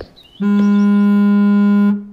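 A single steady, buzzy electronic tone on one low pitch, held for about a second and a half. It starts about half a second in and cuts off just before the end.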